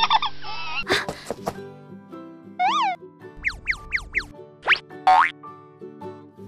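Cartoon sound effects over light children's background music: a wavering whine at the start, then springy boing-like chirps and several quick rising and falling whistles.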